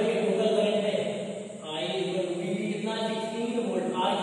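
A man's voice in long, drawn-out, chant-like syllables, in stretches of a second or two with brief breaks.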